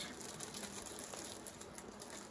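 Faint, irregular light clicking and crinkling from a thin paper stencil sheet being handled and tested.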